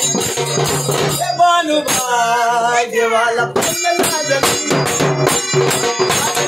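A man sings a Marathi devotional song to Khandoba over a steady beat of drum and jingling percussion. In the middle a long sung line wavers in pitch.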